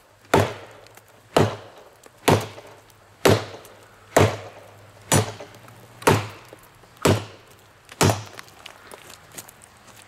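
Heavy, thick-bladed Schrade Bolo machete chopping into a standing tree trunk: nine hard strikes about a second apart, stopping near the end.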